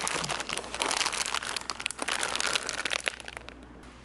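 Plastic bag of soft plastic fishing baits crinkling and rustling as it is handled, a dense crackle that eases off about three seconds in.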